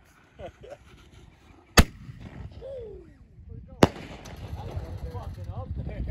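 A consumer firework artillery shell going off: a sharp bang as it launches from its mortar tube, then a second sharp bang about two seconds later as it bursts in the air.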